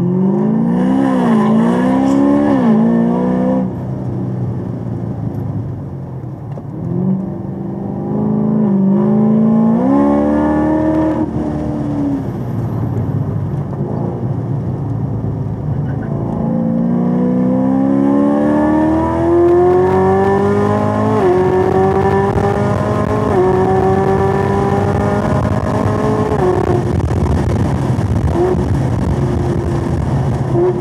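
Chevrolet Camaro ZL1 1LE's supercharged V8 accelerating hard through the gears. The engine note climbs in pitch with revs, then drops back at each of several upshifts.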